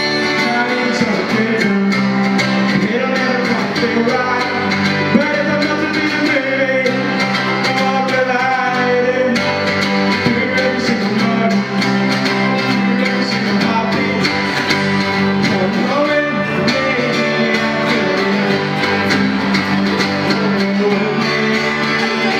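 Live acoustic duo: an acoustic guitar strummed together with a mandolin, and a male voice singing over them.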